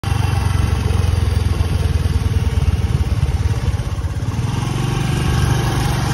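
Motor scooter engine running steadily as the scooter rides along a dirt road, heard close up.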